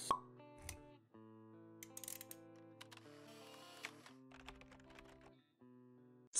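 Quiet logo-intro jingle: soft sustained notes that change every second or so, with scattered light clicks, opening on a sharp pop.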